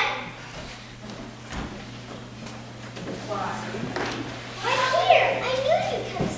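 A child's voice speaking a few short phrases from the stage, after about three quieter seconds. A low steady hum runs underneath.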